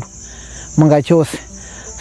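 A steady, high-pitched chorus of insects stridulating in the background, continuing unbroken through the pauses in a woman's speech.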